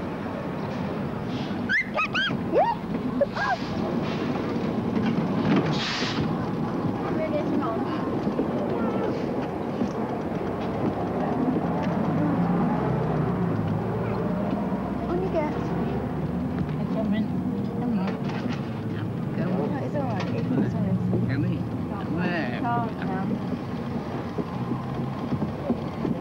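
Double-decker bus's diesel engine running as it pulls up to the stop and passengers board, a steady low rumble under indistinct voices, with a brief hiss about six seconds in.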